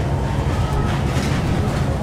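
Steady low rumble of background noise, with no distinct event standing out.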